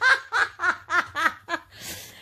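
A woman laughing hard in a run of short bursts, about four a second, slowly falling in pitch, ending with a breath in.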